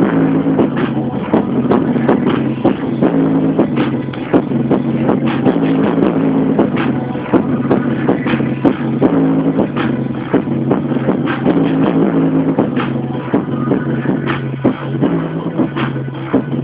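Music with a steady beat and a repeating bass line.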